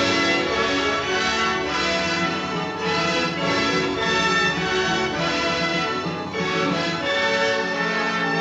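A full orchestra playing continuous film-score music, many sustained instrumental lines at once: the overture of the 1939 film's opening credits.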